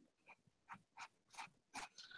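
Faint, short strokes of a paintbrush dabbing acrylic paint onto fabric luggage, a little over two strokes a second and growing slightly louder.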